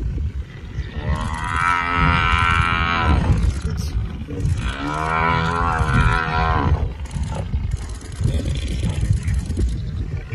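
African buffalo bellowing in distress as lions hold it down: two long, drawn-out calls, one starting about a second in and one about four and a half seconds in, each lasting over two seconds.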